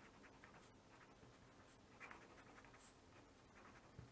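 Faint scratching of a pen on paper as words are written by hand, with a few slightly louder strokes about halfway through.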